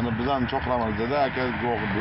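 Speech: a person talking, over a low steady rumble.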